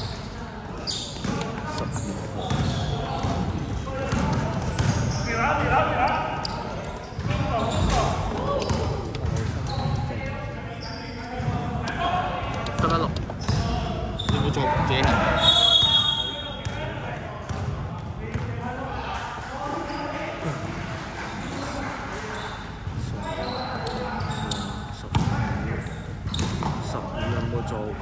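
Indoor basketball game in a large, echoing sports hall: the ball bouncing on the court floor amid players' voices calling out.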